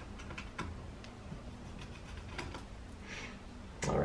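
A few faint, scattered light clicks and taps of small screws and a screwdriver being handled and set down on a desk beside an opened laptop.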